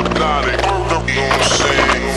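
Scratch-music track: vinyl record scratches, quick up-and-down pitch sweeps, over a sustained low bass line.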